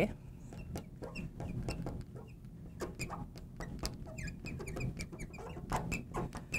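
Marker squeaking and ticking on a glass lightboard as words are written: a quick run of short, high squeaks and light taps.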